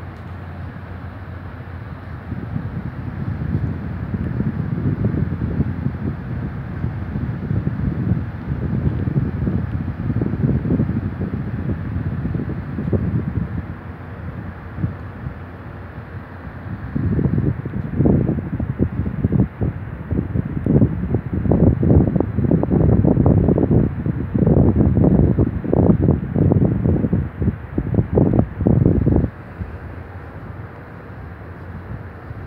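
Rumble of a rubber-tyred Montreal metro train moving through the station, with pulsing surges. It grows louder about halfway through and cuts off sharply shortly before the end.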